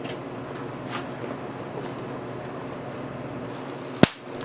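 Steady low hum and hiss of room tone, with a few faint clicks in the first two seconds.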